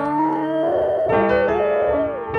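A dog howling along to a piano, its long wavering howl sliding in pitch over the sustained piano chords; a new piano chord is struck about halfway through.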